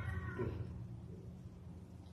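A short drawn-out vocal sound at the start, the tail of a man's hesitation "uh" into a handheld microphone, then a quiet room with a steady low hum.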